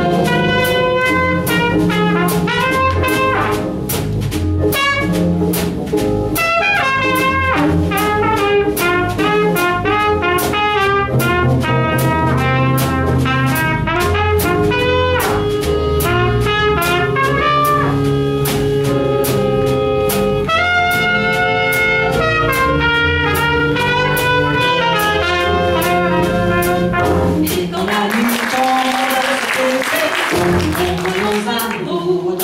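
Live jazz combo playing an instrumental section: a trumpet carries the melodic line over drum kit, bass and piano. The music stays loud and steady, then thins out near the end into a noisy wash.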